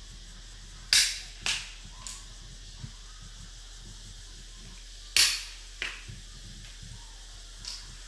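Wooden xiangqi pieces clacking sharply against the cardboard board and against each other as they are moved and captured. There are two loud clacks, about a second in and about five seconds in, and each is followed by a softer click.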